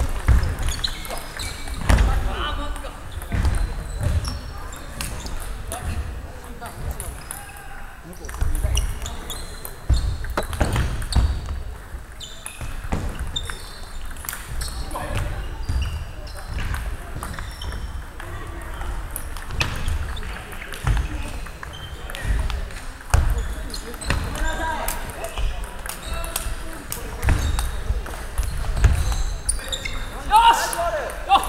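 A table tennis ball clicking off paddles and bouncing on the table during rallies and between points, with low thuds mixed in.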